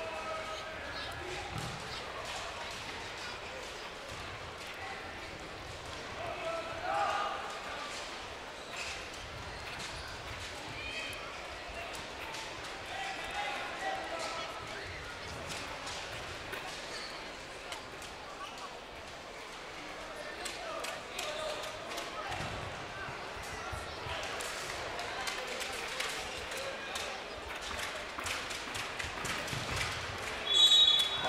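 Sports-hall ambience during an indoor futsal match: a crowd murmuring and calling out, with scattered sharp knocks of the ball being kicked and bounced on the court. It swells briefly about seven seconds in and again from about three quarters of the way through.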